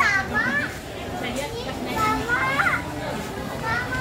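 Busy indoor market hubbub: high-pitched children's voices calling out a few times over a background murmur of chatter.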